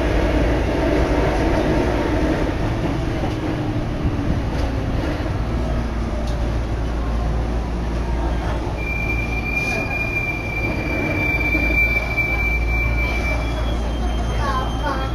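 Keikyu Main Line train running and rumbling steadily, heard from inside the carriage as it comes into Kitashinagawa station. From about two-thirds of the way in, a steady high-pitched squeal of wheels or brakes holds for several seconds as the train slows for the stop.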